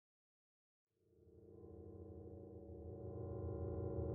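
Silence for about a second, then a steady electronic drone fades in and slowly grows louder: a low hum with held higher tones above it.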